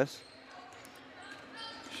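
A basketball being dribbled on a hardwood gym floor, faint bounces over the low murmur of the hall.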